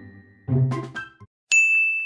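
A short phrase of mallet-like background music dies away, and after a brief silence a single bright bell-like ding is struck about one and a half seconds in, ringing on in one high tone. The ding is the loudest sound.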